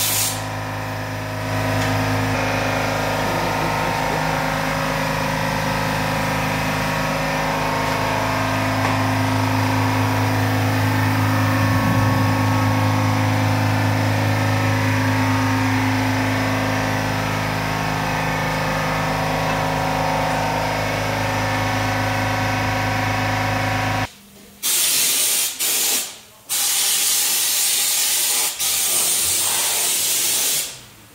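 Undercoat spray gun hissing as underseal is sprayed onto a vehicle's underside, over a steady mechanical hum. The hum stops about three-quarters of the way in, and the spraying then comes in several separate bursts.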